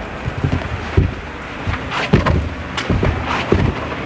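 Low rumble of wind buffeting a handheld microphone, with irregular thumps of handling and steps as the camera is carried along.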